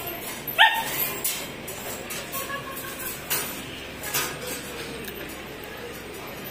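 Husky puppies yipping. One loud, short, rising yip comes about half a second in, followed by a few shorter, quieter yelps.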